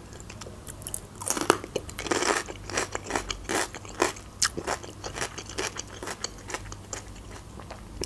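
Chewing and crunching of raw red bell pepper, a quick run of short crisp crunches that starts about a second in.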